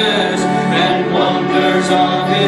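Church congregation singing a hymn together, many voices at once.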